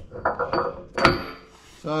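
A metal pin in a cast tow hitch being pushed up by hand, knocking metal on metal, with one sharp ringing clink about a second in.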